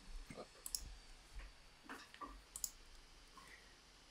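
Faint, sparse clicks of a computer mouse, a few scattered clicks a second or so apart.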